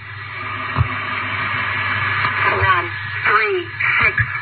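Hijacked FM radio broadcast playing through a car radio: a hissy, static-like noise bed that swells over the first couple of seconds, with fragments of a voice reading out numbers near the end and a steady low hum underneath.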